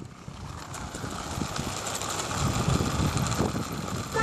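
A rough rumbling noise with scattered faint clicks that grows steadily louder.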